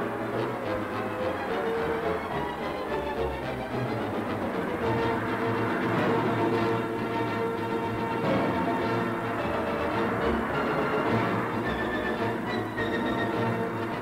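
Newsreel background music, orchestral, with held chords that change every second or two.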